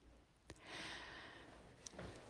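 A woman's soft breath, lasting about a second, taken in the pause between spoken sentences, with a faint click just before it and another near the end.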